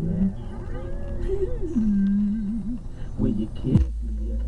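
A voice singing wordless, sliding melodic lines that glide up and down in pitch. Near the end a steady low rumble comes in under it.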